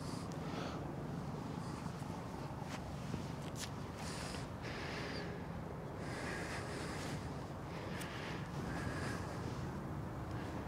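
Quiet steady outdoor background noise, with a few faint short rustles and light clicks scattered through it; no clear club strike.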